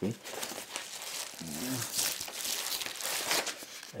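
Padded kraft-paper mailer crinkling and rustling as it is handled, with some tearing.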